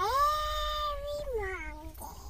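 A young girl's voice holding one long, high, drawn-out note that swoops up at the start and falls away near the end.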